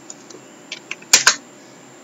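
Clicks from computer input at a desk: a few faint ticks, then two sharp clicks in quick succession about a second in.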